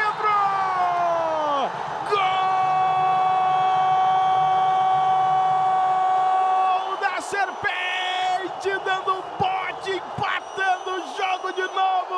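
A Brazilian TV commentator's drawn-out goal shout. A cry falls in pitch, then one long 'gooool' is held on a single steady note for about four and a half seconds, followed by short excited exclamations over a cheering indoor crowd.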